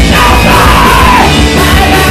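Loud live rock band with a female singer yelling a long held note into the microphone over the guitars; the note slides slightly down and breaks off a little past the middle.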